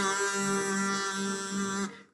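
Pop song playing: a singing voice holds one long, steady note on the word 'hey' over a low pulsing bass line, and the note stops shortly before the end.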